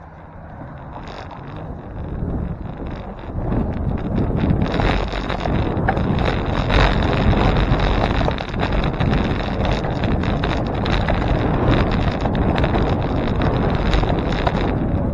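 Wind buffeting the microphone of a camera mounted on a moving bicycle, building over the first few seconds as the bike gets up to speed, then holding as a steady rush.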